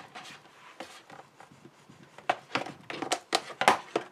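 Cardstock being pressed and smoothed into the corner of a folded card tray: faint rustling at first, then a quick run of short scrapes and taps in the second half.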